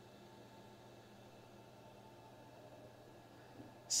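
Near silence: a faint, steady low hum over a soft background hiss.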